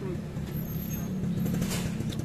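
Steady low rumble of a motor vehicle engine running nearby, under general background noise.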